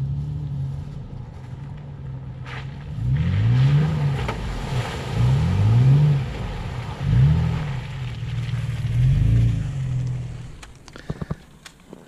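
Toyota FJ Cruiser's 4.0-litre V6 engine running, then revving up and dropping back four times as the truck drives along a dirt track. The engine note dies away near the end.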